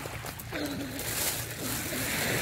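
A few light clicks and crinkles from plastic water bottles being handled. From about a second in, a rising hiss of surf washing over a pebble beach, over a steady low wind rumble on the microphone.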